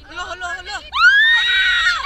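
Teenagers shouting and laughing excitedly, then about a second in a loud, high-pitched scream that rises and holds for about a second.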